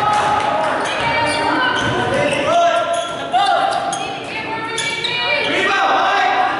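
Basketball game sounds in a gym: the ball bouncing on the court and sneakers squeaking in short bursts on the floor, with shouts from players and onlookers echoing in the hall.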